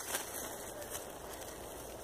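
Faint rustling and crackling of hands moving loose soil and dry leaf litter around a seedling, over a low steady outdoor background hiss.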